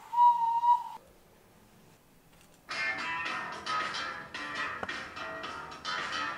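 A small handheld whistle, 'the turtle', blown once: one steady high note held for about a second. After a short pause a strummed guitar starts and keeps playing.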